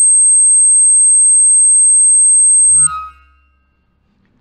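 A single loud, steady, high-pitched electronic tone, a film sound effect, held for about three seconds and then cut off suddenly. A brief low rumble and a short cluster of tones come at the cut, then it fades to near silence.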